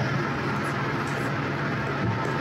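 Steady low hum over an even hiss: kitchen background noise.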